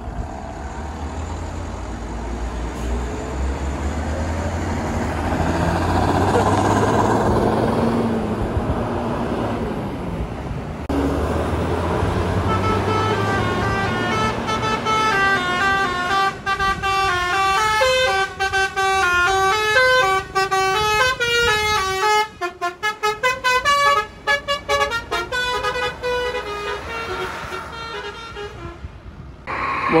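An intercity bus passes with its diesel engine rumbling, loudest about six seconds in. Then, from about twelve seconds in until near the end, a multi-tone bus air horn, an Indonesian 'telolet' horn, plays a quick stepping melody of many short notes.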